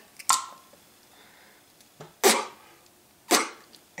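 Three short puffs of breath blown straight into the port of an air-pump check valve, a couple of seconds apart. The air is blocked: the one-way valve is holding, the sign that it works.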